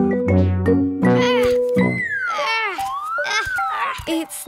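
Playful cartoon background music with held, evenly stepped notes. About two seconds in it gives way to a whistle-like sound effect that slides down, rises and slides down again, mixed with short squeaky character vocal sounds.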